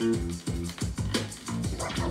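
A hip-hop record playing on a vinyl turntable, with short scratchy pitch sweeps as a DVS control vinyl is rocked back and forth by hand to cue up the start of a track.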